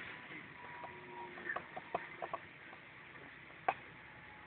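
Faint running noise inside a moving bus, with a handful of light ticks and clicks in the middle and one sharper click near the end.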